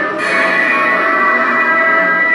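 Spooky music with sustained bell-like tones playing from a life-size animated Sam Halloween prop that has been switched on.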